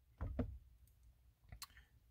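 Soft clicks from the Mercedes S550's centre-console rotary controller as it is pushed in to select a menu item: a small cluster of clicks about a quarter second in, then one sharp click near the end.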